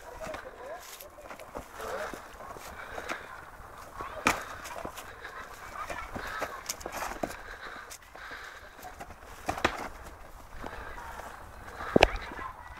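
Boxing gloves landing during sparring: a few sharp smacks of punches, the loudest about four seconds in and again near the end, over a murmur of background voices.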